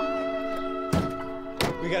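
Two car doors shutting with a thunk, the first about a second in and the second a moment later, over background music of steady sustained tones.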